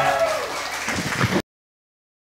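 The last held chord of the film-song accompaniment dies away in the first half second, and scattered audience applause begins. The sound then cuts off abruptly about a second and a half in.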